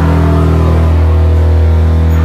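Amplified electric guitar and bass holding a loud, steady low drone of sustained notes through the amplifiers, unchanging in pitch.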